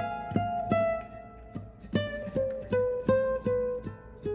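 Nylon-string classical guitar playing a single-note line, outlining the E7 chord of a D minor progression. Separate plucked notes come about three a second, with a pause of about a second in the middle while one note rings on.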